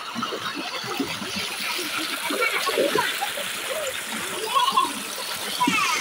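Water pouring from a pipe into a concrete tank, with splashing as people move about in the water.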